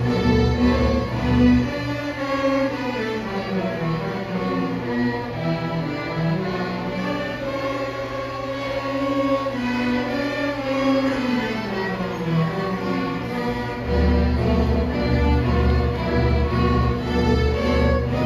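A sixth-grade string orchestra of violins and cellos playing a piece, a melody moving over held notes. The low cello notes drop out about two seconds in and come back strongly near fourteen seconds in.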